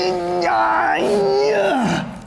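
A man's long, drawn-out vocal cry held on one pitch for nearly two seconds, then dropping away near the end, as he strains to push a large heavy cardboard box.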